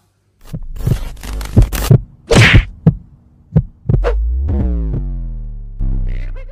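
Edited intro sound-effect stinger: a run of sharp hits over deep bass, a hissing whoosh about two and a half seconds in, then a long falling tone from about four seconds, with one more hit near the end.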